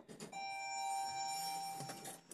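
Otis ReGen elevator's electronic arrival chime: one steady tone held for about a second and a half, then it cuts off.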